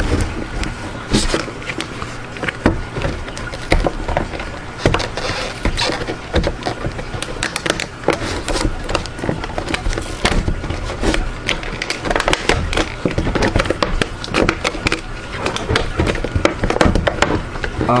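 Cardboard box and plastic packaging being opened by hand close to the microphone: continuous rustling and scraping broken by many sharp clicks and knocks.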